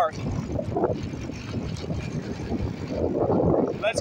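Wind buffeting the microphone of a camera carried on a moving bicycle: a steady low rumbling noise that swells briefly about three seconds in.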